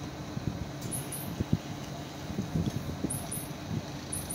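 High-pitched animal squeaks played from a phone's small speaker, coming in quick pairs about a second in and again about three seconds in, over irregular low knocks and rumble.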